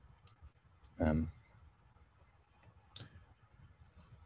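A pause in speech: one short murmured vocal sound about a second in, and a few faint clicks scattered through the pause, the loudest about three seconds in.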